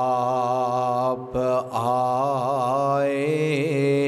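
A man's voice chanting an Urdu naat without words, drawing out long melodic notes with wavering ornaments and a brief break for breath about a second and a half in.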